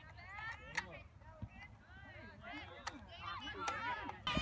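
Voices shouting and calling across a soccer field, high-pitched and overlapping, with a few sharp knocks: one about a second in, and two more in the last second or so.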